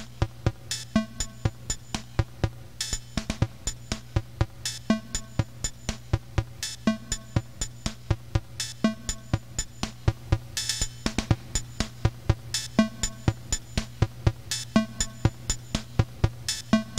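Live lo-fi electronic beat: a sampler drum-machine pattern loops about every two seconds over a steady low synthesizer bass drone. A short hiss-like noise sweep rises just before the 11-second mark.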